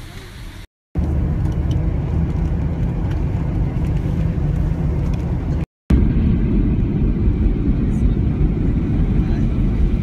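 Loud, steady low rumble of a jet airliner's engines heard inside the cabin from a window seat over the wing. A brief quieter stretch of cabin chatter comes before it, and a short break occurs about six seconds in.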